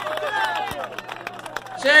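Men's voices talking over a crowd, with a few sharp clicks; a loud man's voice breaks in near the end.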